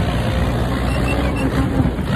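Massey Ferguson 290 tractor's four-cylinder diesel engine running steadily under load, driving a PTO-powered grass topper while mowing.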